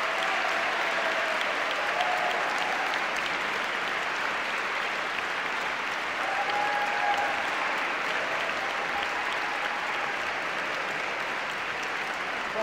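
Concert hall audience applauding steadily, a dense even clapping that holds at the same level throughout.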